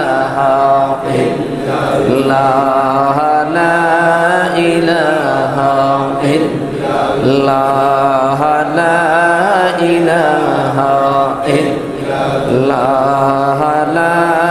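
A man's voice chanting a melodic devotional recitation into a microphone, in long wavering held notes, phrase after phrase.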